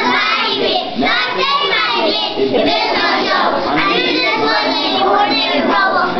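A group of young children singing a song together, many voices at once.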